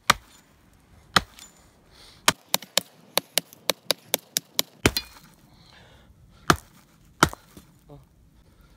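Small hatchet chopping into a fallen, snow-covered branch. There are two single sharp chops, then a quick run of about a dozen rapid blows, then two more heavy chops near the end.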